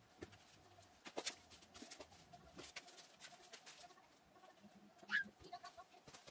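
Faint rustling and soft handling sounds of folded cloth being pressed into a fabric storage bin, with a short rising squeak about five seconds in.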